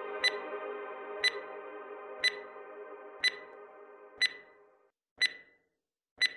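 Countdown intro music: a short, sharp ping sounds once a second, six times, marking each number of the countdown, over a sustained chord that fades out about five seconds in. After that only the pings remain.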